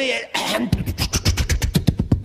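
A man imitating a propeller-plane engine with his mouth as it coughs and sputters under throttle. A breathy burst about a third of a second in turns into a rapid putt-putt of about a dozen pops a second.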